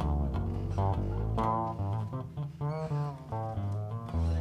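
A band's guitar and bass guitar playing between spoken announcements, with held low bass notes under a higher line of changing notes.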